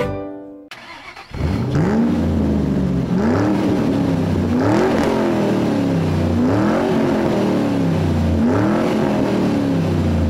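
A plucked-string tune ends at the start. After about a second, an engine runs with a steady low rumble, its pitch rising and falling over and over about every two seconds.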